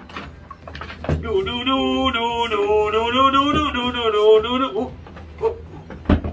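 A voice holding one long, wavering note for about three and a half seconds, like a drawn-out hum or a comic drying noise.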